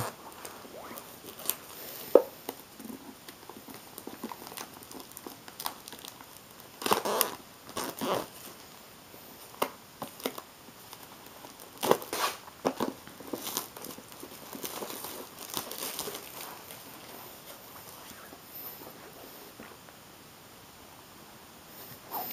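Clear plastic shrink-wrap being peeled off a cardboard retail box and crumpled, in intermittent crinkling, tearing rustles with pauses between, plus one sharp click about two seconds in.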